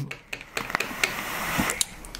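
A vape being drawn on: air hissing through the atomizer during an inhale of about a second, with a few small clicks or crackles.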